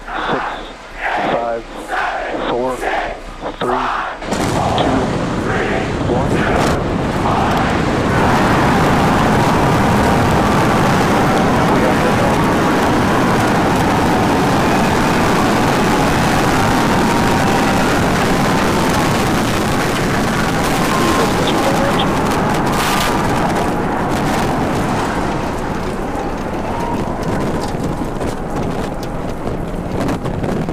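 A spoken launch countdown, then about four seconds in the sudden, loud roar of the Super Heavy booster's 33 Raptor engines igniting for liftoff. The even rumble holds as the rocket climbs and eases slightly near the end.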